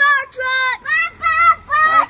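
A young child's high voice in a sing-song chant: a string of short syllables, each rising and falling in pitch, as he keeps calling after the departing fire truck.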